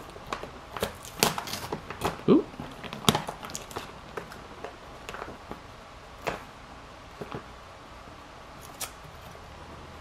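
Hands rustling a black packaging bag and tugging at its red chain-stitched pull string, with scattered crinkles and clicks that are busiest in the first few seconds and sparse later. The string is not unravelling because the tab was pulled the wrong way.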